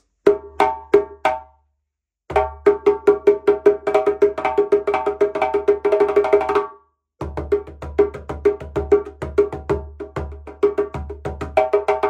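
A 13-inch djembe played with bare hands. A few opening strokes, a short pause, then a fast, even run of ringing strokes, a brief break at about seven seconds, and a steady rhythmic pattern to the end.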